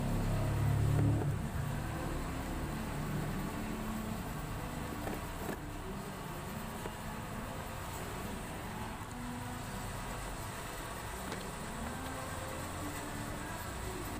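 Steady low background hum, louder for the first second and a half, with a few faint clicks and knocks as a scooter battery is handled and set into its plastic compartment.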